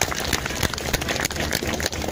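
Noise from an outdoor crowd: a dense crackle of scattered clapping over a low murmur.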